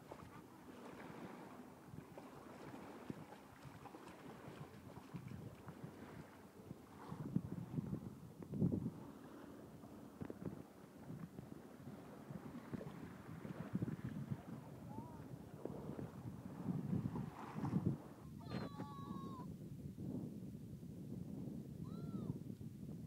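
Uneven wind buffeting the microphone aboard a small boat on the water, rising and falling in gusts, with faint distant voices; a brief high-pitched call about three-quarters of the way through.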